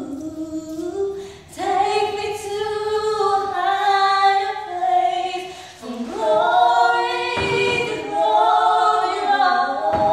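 Two young women singing a gospel song a cappella, in long held phrases with brief pauses for breath between them.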